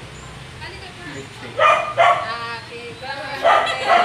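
A dog barking four times in two quick pairs, over people chatting.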